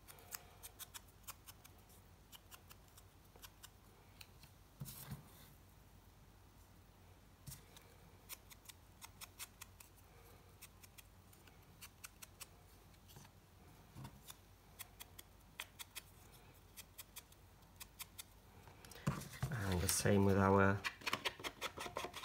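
Foam ink blending tool dabbed on an ink pad and rubbed along the edges of small pieces of paper: a long run of short, irregular scuffs and taps.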